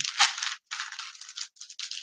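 Handling noise close to the microphone: a printed cardboard card rustling and scraping against the recording device, with a brief knock about a quarter second in.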